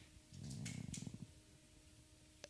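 A faint, low, creaky hesitation sound from a man's voice into a handheld microphone, lasting about a second, then near silence.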